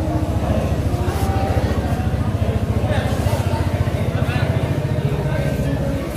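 An engine running steadily with an even, rapid throb, over background voices.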